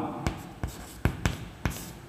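Chalk writing on a chalkboard: a scratchy drag of chalk, broken by several sharp taps as strokes start and end.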